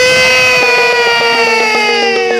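A man's long, loud, sustained cry, held throughout with its pitch slowly falling. Under it run a steady musical drone and faint regular percussion beats.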